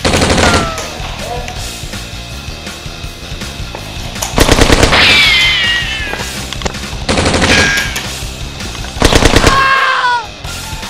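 Airsoft rifle firing four fully automatic bursts of about a second each, a rapid even rattle of shots: one at the start, one about four and a half seconds in, one about seven seconds in and one near the end.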